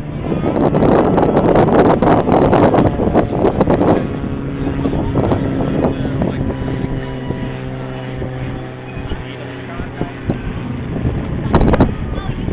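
Wind buffeting the microphone for the first few seconds, then a steady low motor hum with several held tones.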